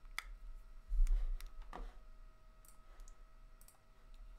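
Clicks and handling bumps from a small handheld object being fiddled with close to the microphone: a sharp click just after the start, a dull bump about a second in, then two more clicks. A faint steady whine runs underneath.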